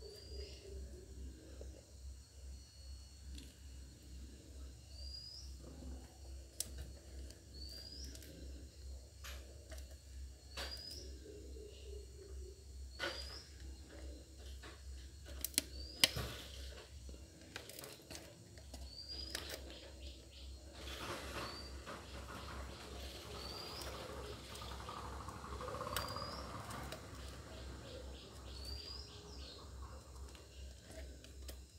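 Faint clicks and rustling of wires being handled and twisted together by hand. Under them a bird repeats a short rising chirp every two to three seconds, and a steady low hum runs throughout.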